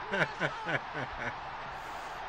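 A man laughing in a quick run of short whooping bursts that fade out a little over a second in.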